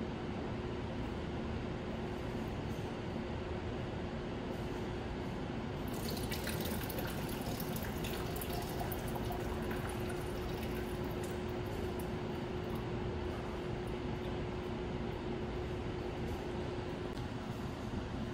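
Water poured from a small cup into a metal displacement vessel, then, from about six seconds in, a thin trickle of excess water running out of the vessel's spout as it overflows at the brim.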